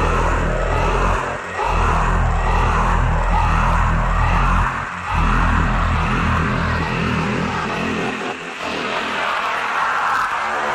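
Bass-heavy electronic dance music from a DJ mix, in the drum-and-bass or dubstep style: a deep, sustained bass line that drops out briefly about a second and a half in and again about five seconds in.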